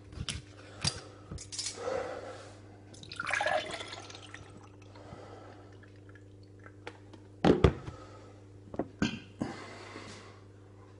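Clicks of a plastic bottle cap being unscrewed, then thick aloe vera gel glugging and splashing as it is poured from the plastic bottle into a pint glass. A couple of loud knocks follow later on, then a few lighter ones.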